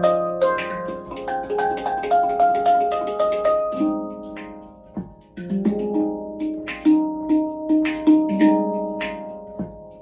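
Handpan played with the fingertips: ringing steel notes in a flowing melodic pattern, with light percussive taps. The playing thins out about halfway through, then resumes with lower notes repeated in a steady rhythm.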